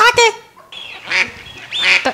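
A woman laughing hard in high-pitched, honking bursts, the loudest at the start, with more bursts in the middle and near the end.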